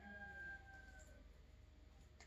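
Near silence: room tone with a low steady hum, and a faint held tone that fades out about a second in.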